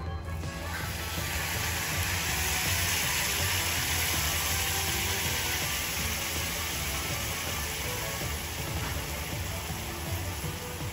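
Hot soup poured into a heated stone pot, hissing and sizzling as it boils up on contact. The hiss swells over the first few seconds, then slowly eases.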